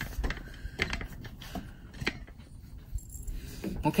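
Handling noise: a few light clicks and knocks scattered through, over a low rumble, as the rotisserie motor and the camera are moved about.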